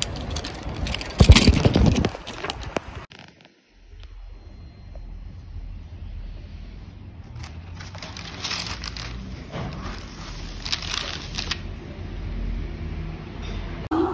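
Stiff pages of a photo album being turned and handled, the paper rustling in two bursts over a low steady hum. Before that comes a few seconds of street noise with one loud rustle of handling or wind, the loudest moment.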